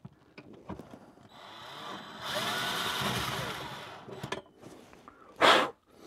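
Power drill boring a hole into the closet wall for a rod bracket: it spins up about a second and a half in, runs for roughly two and a half seconds with its pitch sliding under load, then stops. A loud short puff of breath follows near the end.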